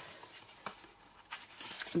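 A sheet of scored cardstock being folded up along its score lines by hand: faint paper rustling with a couple of small clicks.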